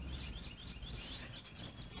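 Birds chirping in the background, a run of short high chirps several times a second, over a low steady rumble of outdoor noise.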